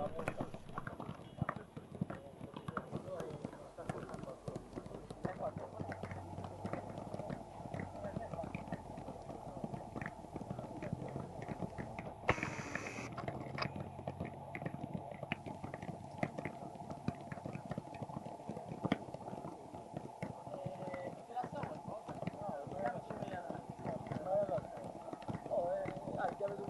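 Footballs being juggled and kicked by many players: a stream of irregular soft thumps of ball on foot, under a background of indistinct voices talking.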